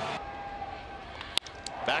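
Ballpark crowd noise, then a single sharp crack of a wooden bat meeting a pitch, about a second and a half in, as the ball is hit back up the middle.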